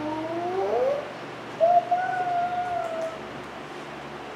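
A man's voice making drawn-out wordless sounds: a long tone rising in pitch in the first second, then after a short gap one steady, fairly high held note for about a second and a half.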